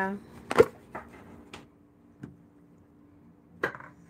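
Plastic blender jar being handled and lifted off its base: a sharp click about half a second in, then a few lighter knocks and clicks, over a faint steady hum.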